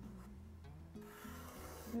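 Felt-tip Sharpie marker rubbing and scratching across paper as drawn lines are retraced, the scratch growing stronger about a second in, over soft background music.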